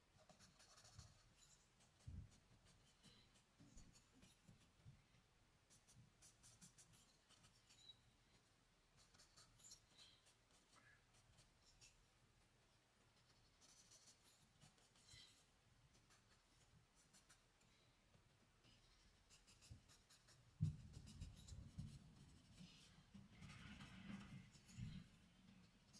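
Faint scratching of a charcoal stick across drawing paper in short, intermittent strokes. From a few seconds before the end, a louder, lower rubbing of fingers against the paper, with one sharp knock as it begins.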